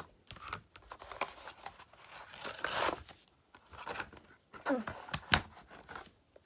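Cardboard and plastic toy-car blister packaging being torn open by hand, with crinkling and several short ripping bursts, the longest about two seconds in.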